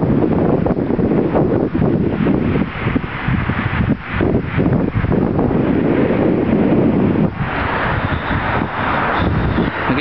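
Wind buffeting the microphone: loud, rough, rumbling noise, turning to a higher hiss about seven seconds in.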